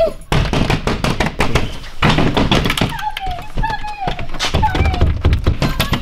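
A rapid run of thunks and knocks, with a voice heard from about three to five seconds in.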